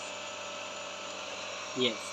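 Ecovacs Deebot T9 robot vacuum running with a steady whir and a few faint steady tones as it drives forward normally, the sign that its newly replaced left anti-drop sensor has cured the turn-and-stop fault.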